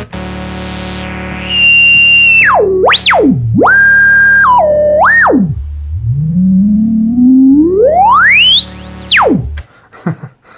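Elektron Analog Four analog synthesizer: a held note, joined about a second and a half in by a loud, pure whistling tone that is swept down and up by hand several times, then climbs slowly from low to very high and cuts off just before the end. The sweep is typical of a resonant filter pushed into self-oscillation.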